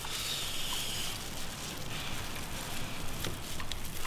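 Soft crinkling and rustling of disposable plastic gloves as hands pull apart boiled chicken on a platter, over steady outdoor background noise.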